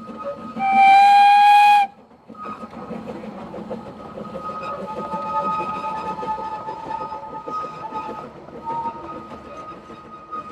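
Hunslet narrow-gauge steam locomotive sounds a single whistle blast of about a second. It then runs on with its train, a steady rumble of exhaust and wheels on the rails.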